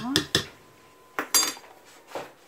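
Metal spoon clinking against a stainless steel pot while baking soda is spooned into the water: a few quick taps in the first half second, then another clatter of metal about a second later.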